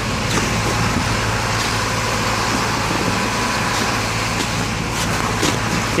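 A truck's diesel engine running steadily, a constant low hum under general street noise, with a few faint rustles and clicks of a canvas tarp being handled.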